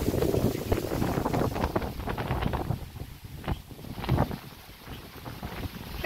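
Wind buffeting the microphone outdoors, a gusty rumble that eases off about halfway through.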